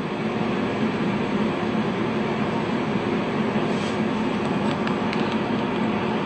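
Steady rumbling background noise with a low hum, holding at an even level with no break.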